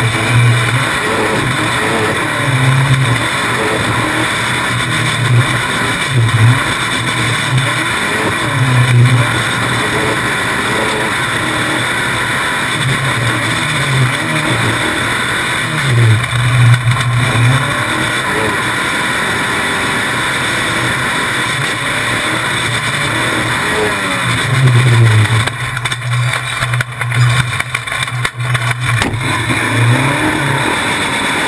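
Dirt race car engine at racing speed, rising and falling in pitch over and over as the throttle is opened and lifted through the laps, heard from a camera on the front suspension. Near the end the sound turns choppy and uneven for a few seconds.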